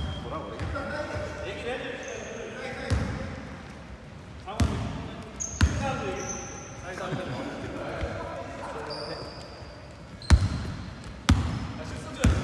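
Basketball bouncing on a hardwood gym court, a handful of separate bounces, two of them close together near the end, with short high sneaker squeaks and players' voices calling out.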